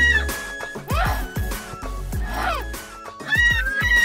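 Music with a deep bass line and a beat, overlaid with high tones that glide up and down in arcs near the start and again near the end.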